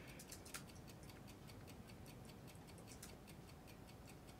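Faint, quick clicking of typing on a MacBook laptop keyboard, several keystrokes a second at an uneven pace.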